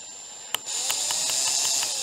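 Ryobi One+ 18V cordless drill running as a small bit drills into the aluminium mirror-mount thread of a motorcycle brake fluid reservoir, working around a drill bit broken off inside it. It starts at low speed, gives a sharp click just over half a second in, then runs faster and louder as a steady high whine.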